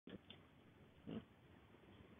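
Near silence: faint room tone, with two short, faint sounds, one at the very start and one about a second in.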